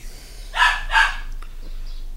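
A dog barking twice in quick succession, short sharp barks about half a second apart.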